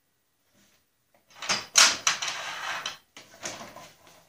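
Ceiling-mounted dust-collector swing arm and its corrugated plastic hose being grabbed and moved by hand: rattling and scraping with one sharp clunk about two seconds in, then a few lighter knocks near the end.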